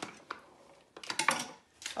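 Wire whisk clattering and clinking against a plastic toy mixing bowl in a few quick strokes: once early, a cluster about a second in, and once more near the end.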